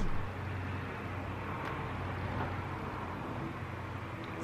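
Steady hiss of background noise, with no music or speech.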